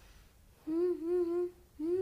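A young boy humming at a near-steady pitch: a hum of about a second, then a shorter one near the end.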